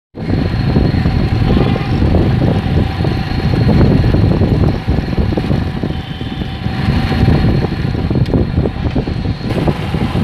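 Motorcycle running while riding along a road, with heavy wind rumble on the microphone.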